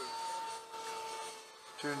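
Electric ducted fan of a Hobby King Sky Sword RC jet flying high overhead, heard from the ground as a faint steady whine over a hiss. It grows fainter past the middle.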